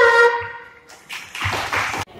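A young girl singing into a microphone holds a last long note that fades out about half a second in. About a second later comes a short burst of noise that stops abruptly.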